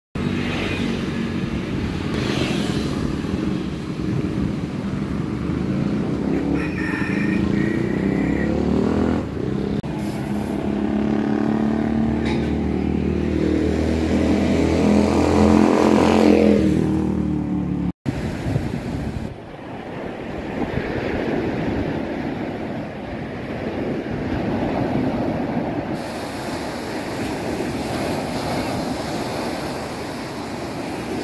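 A motor vehicle engine running, its pitch rising as it speeds up, then cut off suddenly partway through. A steady rushing noise follows.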